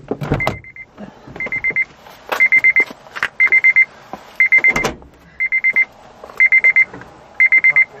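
Electronic beeper sounding in an even pattern: a quick burst of four short, high beeps about once a second. Handling knocks and rustling come between the bursts.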